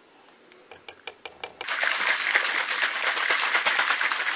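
A few light clicks and knocks, then, less than two seconds in, a shaker bottle shaken hard by hand, its liquid sloshing and rattling in rapid strokes as pre-workout powder is mixed into water.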